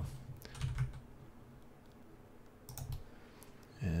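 A few faint computer keyboard key presses and mouse clicks, in two short clusters separated by a quiet stretch.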